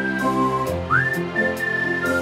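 Background music: a whistled melody of long held notes, each sliding up into pitch, over a bass line and a light steady beat.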